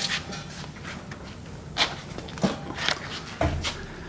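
Clatter and knocks of a heavy wheeled welding cart being pushed through a tight doorway, with several sharper knocks and a deeper thump near the end.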